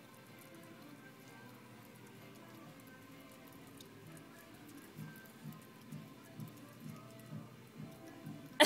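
Miniature pinscher chewing a moth, faintly: soft mouth smacks about twice a second through the second half.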